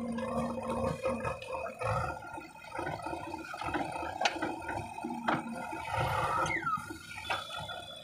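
JCB 3DX backhoe loader's diesel engine running under load as the backhoe digs and lifts soil, with a few sharp knocks from the bucket and arm.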